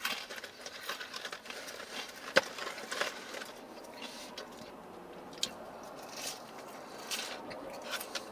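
Quiet chewing of well-done french fries, with faint handling noise from a paperboard takeout box and a few sharp clicks, the clearest about two and a half seconds in and again a few seconds later.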